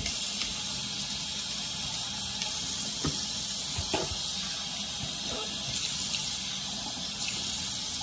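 Bathroom sink tap running steadily into the basin while rinsing after tooth-brushing, with a couple of faint knocks partway through.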